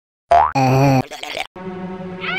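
Cartoon comedy sound effects: a quick rising swoop into a short wobbling boing-like tone, followed by a brief rattle and then music with held notes starting about halfway in.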